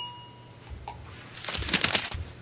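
The ringing of a clink against the brush-rinsing water cup fades out at the start. About a second and a half in, a short rustling scrape follows, a paintbrush being wiped dry after rinsing.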